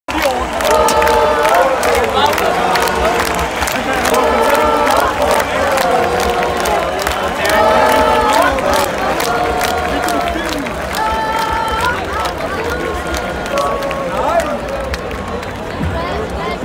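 Live music from a big outdoor stage sound system heard from inside the crowd: a melody of held notes over a steady beat and deep bass, with crowd noise around it.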